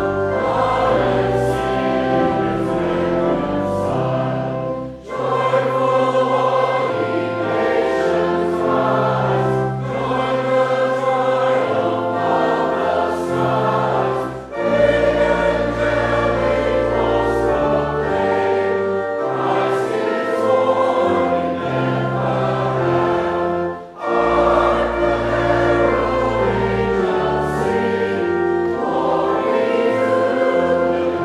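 A choir and congregation singing a Christmas carol with pipe organ accompaniment. The singing comes in long lines, with a brief break between lines about every ten seconds.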